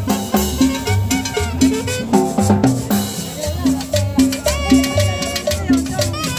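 Live cumbia band playing a steady dance rhythm, with upright bass notes about twice a second, guitar and a scraped metal güira.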